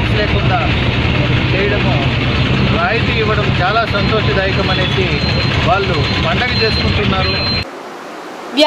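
A man talking outdoors over loud street traffic noise with a steady low engine hum; the noise and voice cut off suddenly near the end.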